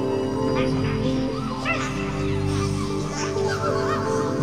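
A droning soundtrack of steady held tones, with many short high chirps that rise and fall in pitch scattered over it.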